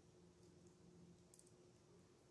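Near silence: room tone with a faint steady hum and a faint click about halfway through.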